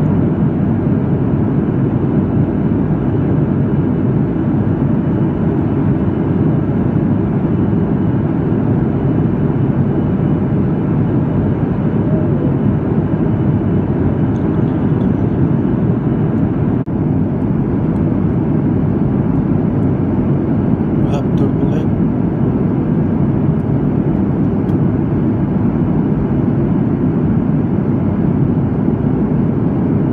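Steady cabin noise of a Boeing 737 MAX 8 at cruise: the low rumble of its engines and the airflow, heard from a window seat inside the cabin.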